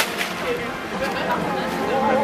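Onlookers' voices chattering, with one sharp click right at the start.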